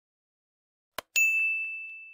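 A short click followed at once by a bright bell ding, one clear high tone that rings on and fades over about a second. It is the notification-bell sound effect of a subscribe-button animation.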